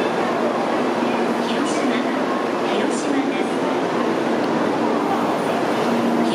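Steady hum of an N700-series Shinkansen train standing at a station platform, its equipment running, with an even level throughout.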